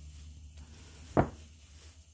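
Small seized Coleman lantern parts being gripped and twisted by hand to test whether they have come free: quiet handling over a low steady hum, with one short sharp knock a little over a second in.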